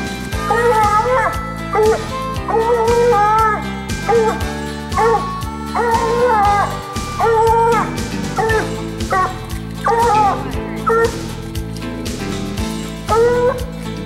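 A coonhound barking treed, repeated long barks about once a second at the foot of the tree holding a raccoon, over a loud background music track.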